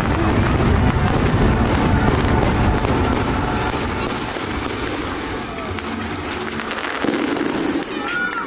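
Aerial fireworks going off in a dense run of booms and crackles, loudest in the first few seconds and easing off after about four seconds.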